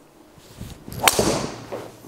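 Cobra driver striking a teed golf ball once about a second in: a single sharp crack of impact that fades quickly.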